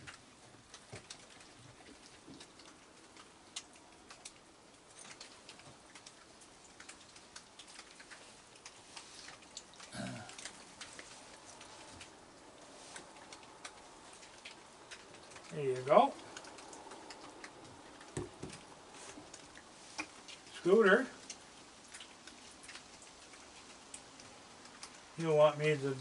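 Raccoons eating dry kibble on a wooden deck: soft, scattered crunching and clicking. Three brief voice-like sounds stand out, about ten, sixteen and twenty-one seconds in.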